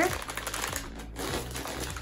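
Plastic packs of dental floss picks rustling and crinkling as they are picked up and handled, a quick run of small clicks.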